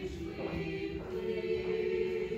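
Church choir singing a slow Communion hymn in long held notes that change pitch every second or so.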